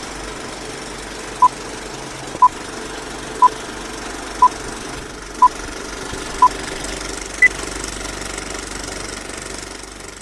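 Electronic countdown beeps: six short beeps one second apart on the same pitch, then one higher beep a second later, over a steady noisy hum with a rattly texture that starts fading near the end.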